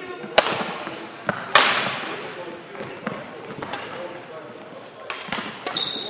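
Badminton rally in an echoing sports hall: sharp racket strikes on the shuttlecock, the two loudest about half a second and a second and a half in, with fainter hits later. A shoe squeaks briefly on the hall floor near the end, over background voices.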